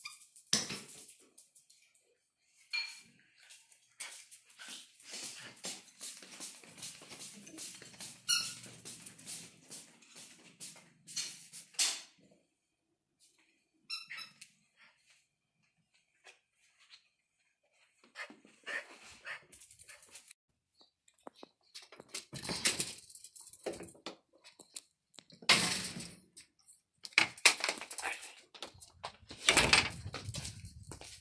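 A small dog at play with a toy: scattered clicks and scuffles with a few short squeaks, then louder bursts of barking in the last several seconds.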